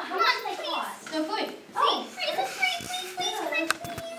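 Children's voices talking over one another, with a few short sharp clicks near the end.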